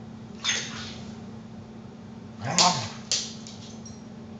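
Two dogs play-wrestling on a wooden floor: short scuffling bursts, and about two and a half seconds in a brief low vocal sound from one dog, its pitch rising then falling.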